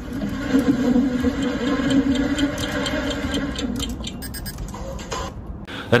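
Typing on a compact keyboard with round keys: a quick, uneven run of key clicks, thicker in the second half. Background music with a held note plays under it.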